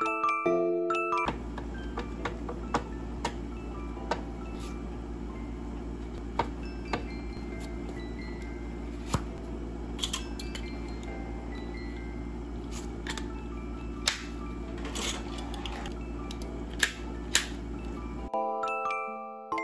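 Music-box background music for about the first second, then it stops. After that, a steady low hum with scattered sharp clicks and clinks as metal binder clips are picked from a box and handled with sheets of paper.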